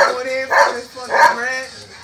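A man rapping a cappella in short, slurred vocal bursts, about three in two seconds, with no backing beat.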